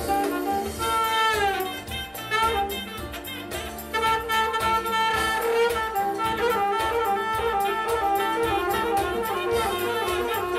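Saxophone played live, a melodic line of quick falling runs and held notes, over a backing track with a steady beat.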